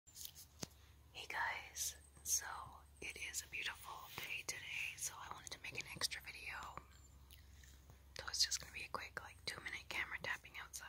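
A person whispering softly, with small sharp clicks between the words.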